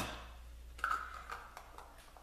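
Several light clicks and taps of small objects being handled, beginning about a second in.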